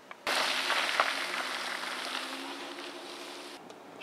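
A sudden loud burst of hissing noise that slowly fades over about three seconds, with a low steady hum coming in under it, then cuts off just before the end: an edited-in dramatic transition sound effect.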